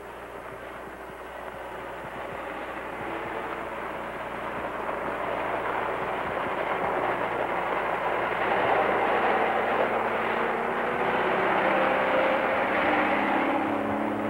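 Gamma Goat six-wheel-drive ambulance driving on a gravel track, its Detroit Diesel two-stroke engine running under load with tyre and gravel noise. The sound grows steadily louder as the vehicle approaches and passes close by near the end.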